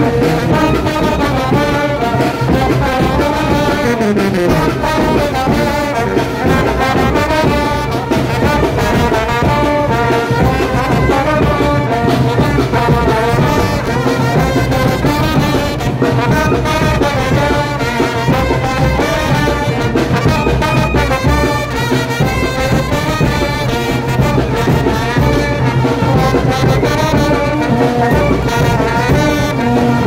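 Brass band playing son de chinelo, trombones close by and trumpets with it, without a break.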